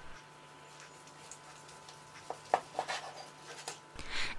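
A carving knife slicing through a roast beef tenderloin on a wooden cutting board, held by a carving fork. Faint for the first half, then a few light clicks and scrapes over a low steady hum.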